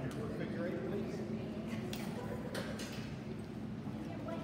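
Indistinct talking, with two short sharp sounds around the middle.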